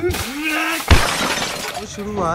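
An edited-in sound effect: a sudden loud crash about a second in, followed by a noisy rush that fades away.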